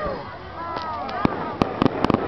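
Aerial fireworks going off: one sharp bang a little past halfway, then a quick run of several cracks near the end, under the chatter of people watching.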